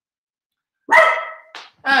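A pet dog barks about a second in, one drawn-out bark followed quickly by a short second one.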